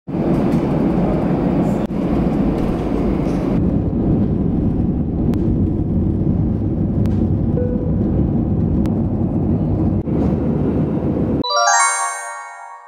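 Steady deep cabin noise of a jet airliner, its engines and rumble heard from inside at a window seat, with a few faint clicks. Near the end it cuts off and a bright chiming music sting begins.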